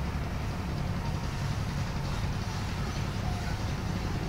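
Steady low background hum with faint hiss, with no distinct event.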